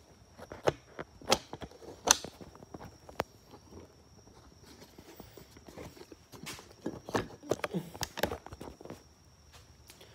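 Scattered light clicks, knocks and shuffles of a handheld phone being moved about, with a busier run of knocks between about six and nine seconds.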